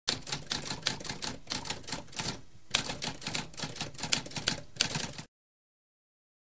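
Typewriter typing: a rapid run of keystrokes with a short break about halfway, stopping about a second before the end.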